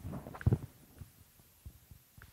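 A dull, low thump about half a second in, then a few faint small clicks, like something being bumped or handled.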